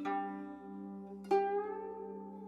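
Background music of plucked string notes: one note rings out at the start and another is plucked just over a second in, each fading slowly.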